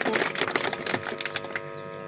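A gap in speech over a PA system: a rapid crackle of clicks that fades over about a second and a half, then a steady electrical hum from the sound system.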